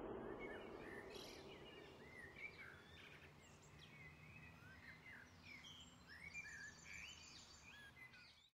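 Faint birdsong: many short chirps and whistled calls from several birds. The last of the music fades out in the first second, and a high, even trill joins in near the end.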